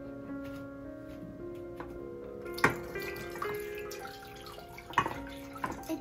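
Milk being poured from a cup into a stainless steel saucepan, a steady splashing pour that starts about halfway through, with a sharp knock as it begins and another near the end. Background music with sustained notes plays throughout.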